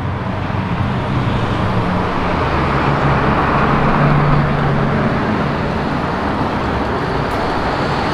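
Bugatti Chiron's quad-turbo W16 engine running at low speed in city traffic: a steady low engine note over road noise that grows louder about halfway through.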